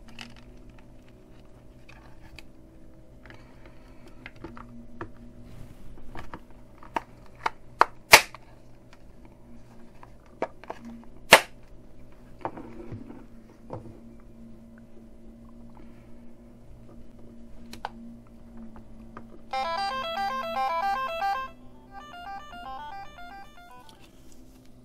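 A plastic project-box lid is handled and pushed into place, with small knocks and two sharp snaps about eight and eleven seconds in, over a faint steady hum. Near the end, two short bursts of a beeping square-wave melody come from the micro:bit through the small PAM8403 amplifier's speakers.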